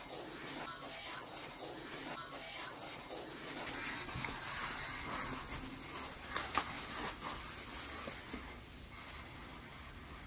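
Faint, hissy spirit box audio: scanning-radio static with a short sound fragment, heard once and then replayed louder, three times. Later there is faint room noise with a couple of sharp knocks about six and a half seconds in.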